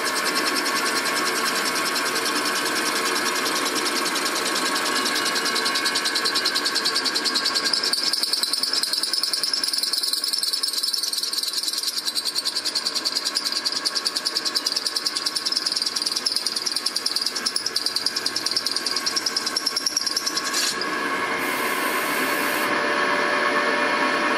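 CNC milling machine drilling a stud hole in an air-cooled VW engine case to fit a case saver insert. The spindle and drill make a steady cutting noise with a fast, even pulsing.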